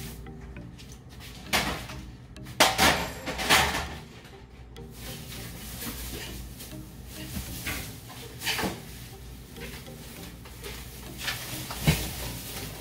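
Background music with a few sharp clattering knocks of kitchenware being handled and set down, the loudest about two and a half to three and a half seconds in, and bag rustling near the end.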